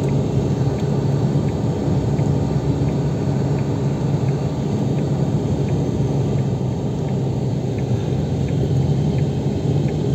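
Steady engine and road rumble of a moving vehicle, heard from inside the cabin, with a constant low hum.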